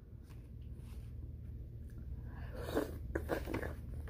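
Faint eating sounds: a few short clicks and scrapes of a utensil and food, starting about two and a half seconds in and lasting about a second, over a low steady hum.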